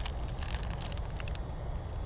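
Wind rumbling on the microphone, with scattered light clicks and crackles as a man drinks from an aluminium beer can.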